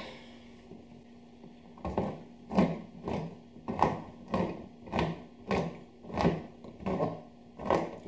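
Hand-crank can opener being turned around the lid of a metal tin, cutting it open in a regular series of strokes, about three every two seconds, starting about two seconds in.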